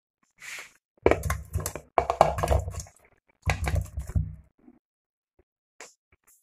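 Chopped bitter gourd pieces tipped from a plate into a pressure cooker of water, landing in three bursts of knocks and plops about a second apart.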